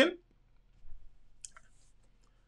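A man's voice ends a word at the very start, then a pause with a few faint small clicks about a second in.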